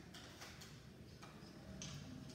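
Near silence in a quiet room, broken by a few faint, irregular clicks and ticks.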